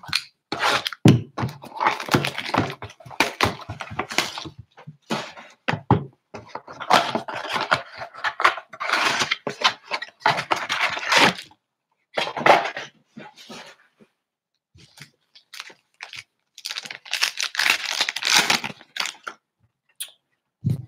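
Cardboard trading-card blaster box being torn open and its packs ripped and unwrapped, with cards handled: crinkling and tearing in bursts, with a lull of a couple of seconds past the middle.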